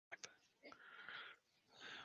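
Near silence, with a couple of faint clicks near the start and a faint breathy sound about a second in.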